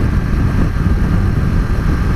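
Wind rushing and buffeting over the microphone of a moving motorcycle. Under it, the 2018 Suzuki GSX-R125's single-cylinder engine runs quietly and can barely be heard.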